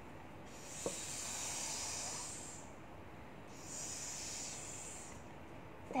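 A person imitating a snake's hiss, "sss", twice, each long hiss lasting about two seconds with a short breath-length pause between them.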